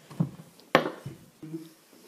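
A single sharp clink of crockery about three quarters of a second in, then a brief low hum of a voice.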